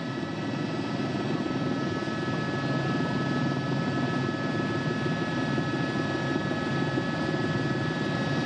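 Steady rotor and engine noise from the television camera helicopter, with a few faint steady whining tones above it.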